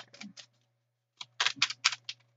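A tarot deck being shuffled by hand. A few soft card clicks come first, then a quick run of sharp card snaps from about a second in.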